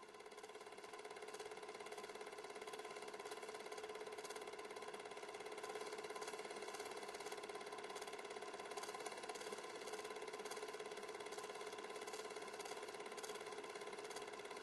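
A faint, steady machine-like hum made of several held tones, with light ticking scattered through it; it fades in over the first two seconds.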